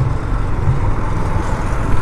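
Single-cylinder KTM Duke 390 engine running steadily at low speed in slow traffic, a low even hum with road noise and no revving.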